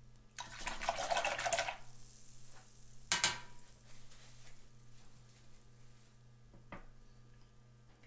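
Handling noise at a painting table: a noisy scrubbing burst lasting about a second and a half near the start, then a sharp click about three seconds in and a fainter click near seven seconds.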